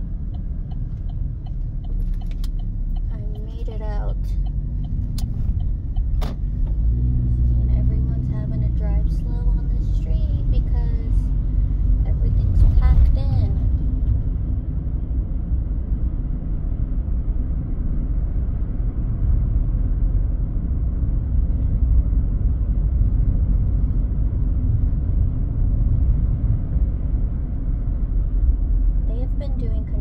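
A car being driven, heard from inside the cabin: a steady low rumble of road and engine noise, with a couple of sharp knocks in the first few seconds.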